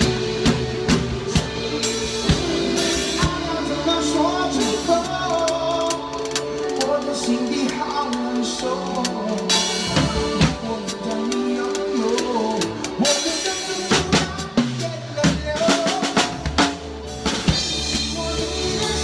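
Acoustic drum kit played along to a pop song's backing track: bass drum, snare and hi-hat in a steady groove, with several loud cymbal crashes.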